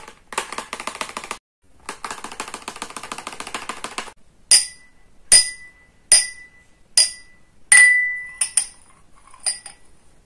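Fingernails tapping and scratching quickly on a cardboard box, a dense run of small clicks with one short break. Then two glass champagne flutes are clinked together five times, each clink leaving a bright ringing tone, followed by a few softer clinks near the end.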